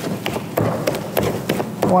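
Wooden spatula knocking against the sides of a metal pot in quick repeated taps, about four or five a second, as thick amala (yam-flour dough) is stirred hard to beat out lumps.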